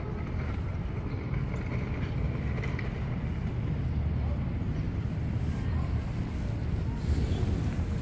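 Steady low rumble of distant city traffic, even in loudness throughout.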